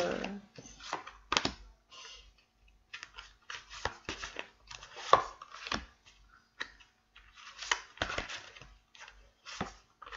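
A deck of tarot cards being shuffled and then dealt one by one face down onto a wooden table: an irregular string of short slaps and flicks of card, with some sharper ones a little over a second in and again around five and eight seconds.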